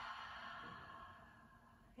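A woman's long, audible sighing exhale through the mouth, a deep relaxation breath that starts strong and fades away over about a second and a half.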